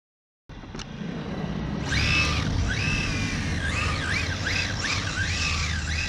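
Battery-powered Kyosho Charger RC car's electric motor whining, its pitch rising and falling over and over as the throttle is worked, over a steady low rumble from the car's camera rolling over asphalt. The sound starts about half a second in, and the whine joins about two seconds in.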